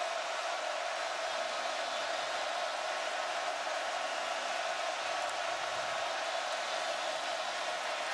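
Steady noise of a large stadium crowd, an even wall of sound with no single voice standing out: the home crowd keeping up its noise while the visiting offense lines up at the line of scrimmage.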